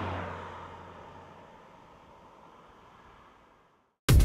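A car driving past and away, its engine hum and tyre noise fading steadily to near silence.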